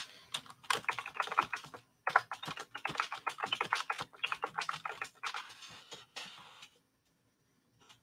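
Typing on a computer keyboard: a fast, uneven run of key clicks with a short pause about two seconds in, stopping about a second before the end.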